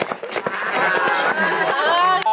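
Several young voices whooping and cheering in long, held cries that overlap one another.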